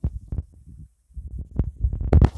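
Wind buffeting a phone's microphone: irregular low rumbling gusts, with a brief drop-out about a second in.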